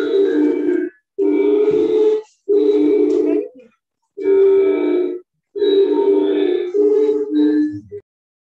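A woman's voice in phrases about a second long, each held on fairly steady pitches, with short pauses between them. It stops abruptly at the end.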